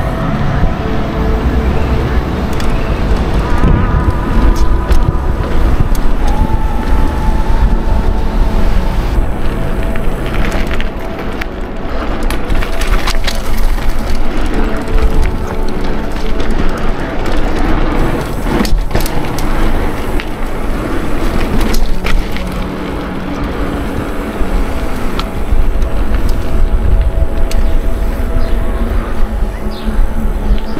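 Wind rushing over the camera microphone and tyre rumble from a mountain bike rolling over paving slabs and asphalt, with a few sharp knocks near the middle as the bike goes over bumps.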